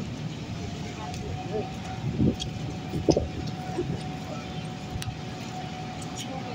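A steady low mechanical hum, like an engine running, with a faint constant whine over it. Brief snatches of distant voices come through a couple of times.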